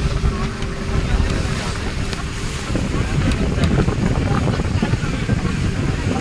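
Ferry launch running across choppy harbour water: a steady engine rumble mixed with wind buffeting the microphone and water washing along the hull, with a faint steady hum that drops away about halfway through.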